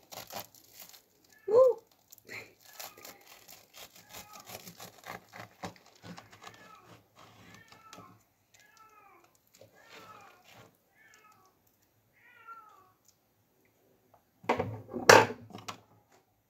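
A knife sawing through a toasted sandwich on a ceramic plate: crunching toast and short squeaky tones as the blade scrapes the plate, the sharpest squeak about a second and a half in. Near the end comes a louder burst of scraping and clatter as the plate is picked up off the table.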